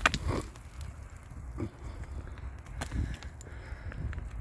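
Faint clicks and small knocks of loose stones and dirt as rocks are worked loose by hand from a bank, over a low wind rumble on the microphone; a laugh trails off at the start.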